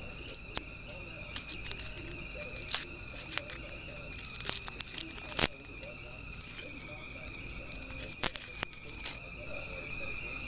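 Paper wrapper being torn and crinkled off a compressed pu-erh tea ball right at the microphone: a run of irregular crackles and rips, the sharpest a little past the middle.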